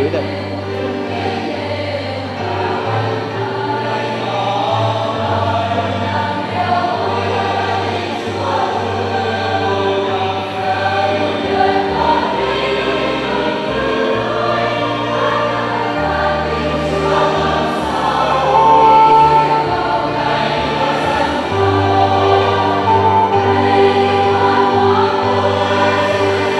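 Choir singing a hymn, with long held low notes underneath that change every few seconds.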